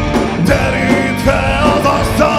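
A metal band playing live: a drum kit with cymbals, bass guitar and guitar, with a melodic line that bends up and down in pitch over the top.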